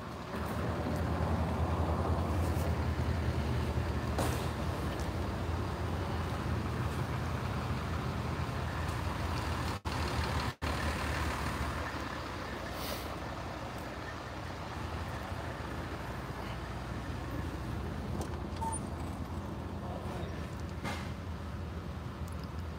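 A vehicle engine idling steadily with a low, even rumble, a little louder in the first half, broken by two brief dropouts about ten seconds in.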